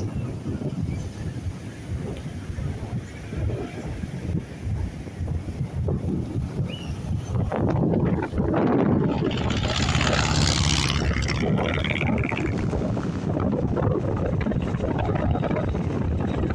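Wind buffeting the microphone with a steady low rumble over the sound of surf breaking on the beach. About halfway through, the rush of a breaking wave swells louder for several seconds.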